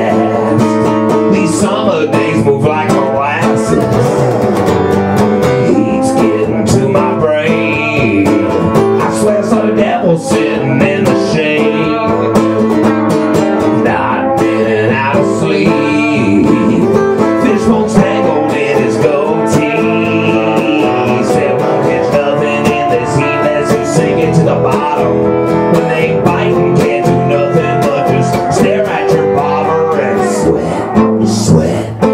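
Live band music: a strummed acoustic guitar under an electric guitar playing lead lines, in an instrumental break with no vocals.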